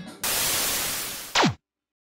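A burst of white-noise static lasting a little over a second. It ends in a loud, fast downward sweep in pitch and cuts off suddenly.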